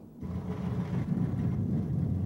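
Pickup truck engine running with a steady low rumble, starting just after the beginning.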